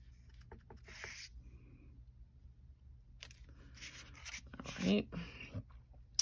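Faint rustling and rubbing of cardstock being handled and stamped, with a few soft clicks and a longer stretch of rubbing about three seconds in.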